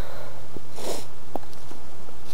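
A person sniffing once, about a second in, with a couple of faint clicks, over a steady background noise.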